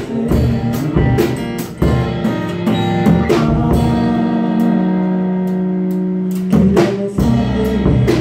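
Live band playing a song: acoustic guitars strummed, a drum kit keeping the beat and a male lead vocal. A little past the middle the drums drop out under long held notes, then come back in near the end.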